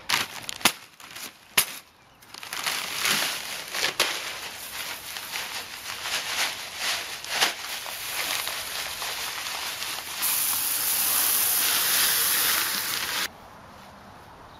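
Gravel poured out of a bag onto the ground: a crackling, hissing pour full of small stone clicks, heaviest and brightest near the end, then cutting off suddenly.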